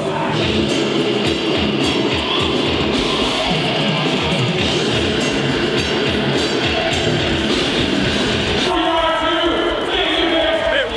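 Heavy metal music with electric guitars over a fast, steady drum beat.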